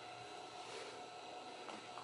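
Quiet room tone: a faint steady hiss with a faint thin hum, and no distinct events.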